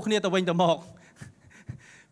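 A man speaking into a handheld microphone for under a second, then a pause of about a second with only faint breath sounds.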